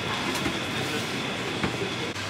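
Steady supermarket background noise, a continuous hum with a faint high tone, with a few light clicks.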